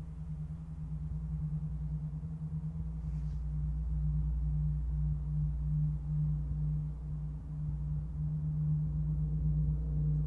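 Large gong played softly with two felt mallets: a deep humming drone that pulses in slow, even swells and gradually grows louder.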